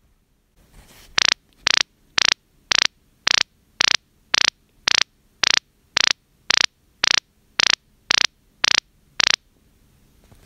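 A smartphone speaker running the phyphox sonar measurement sends out short, high-pitched sound pulses, about two a second, sixteen in all. Each one is the transmitted ping whose echo off a wall the app times to measure the speed of sound. The pulses stop a little after nine seconds in, when the measurement is paused.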